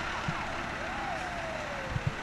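Fire engine (pumper) driving slowly past, a steady rumble of engine and tyres. A faint tone slides down in pitch from about a second in.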